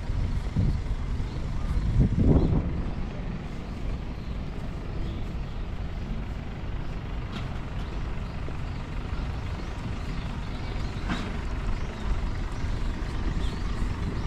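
Steady low outdoor rumble with a louder swell about two seconds in and a couple of faint clicks later on.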